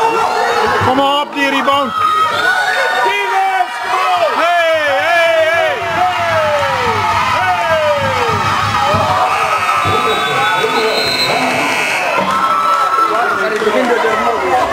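Basketball spectators in a sports hall shouting and cheering, several voices calling out at once with long falling shouts. In the second half a steady high tone sounds for a couple of seconds over the crowd.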